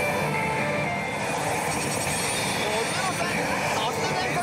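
Steady din of a pachislot hall: a dense wash of noise from many slot machines, with scattered electronic jingles and sound effects, while the player's machine spins its reels.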